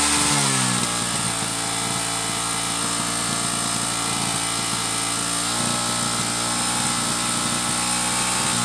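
A Hero Glamour motorcycle's single-cylinder four-stroke engine held steadily at high revs, its exhaust blowing into a balloon stretched over the silencer to inflate it.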